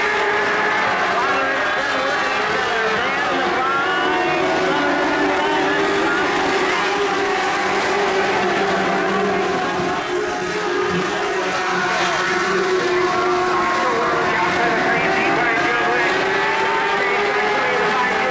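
Several Mod Lite dirt-track race cars' engines running at racing speed, the pitch of the pack rising and falling as the cars accelerate and lift.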